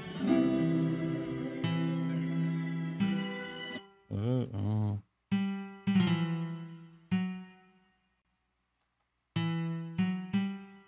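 Software guitar instrument playing a slow single-note melody, each note plucked and left to ring and fade. A couple of notes a little past the middle wobble in pitch with vibrato. The line stops for about a second and a half before notes come back near the end.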